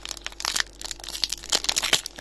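Pokémon booster pack's foil wrapper crinkling and tearing as it is opened by hand: a dense run of irregular crackles.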